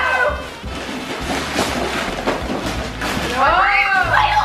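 Wrapping paper being torn and rustled as presents are unwrapped, over background music. A child's excited voice cuts in near the end.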